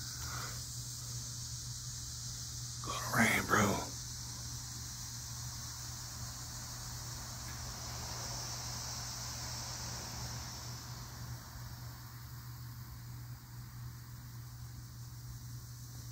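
Steady outdoor background noise, an even hiss with a low hum, with a brief voice-like sound about three seconds in.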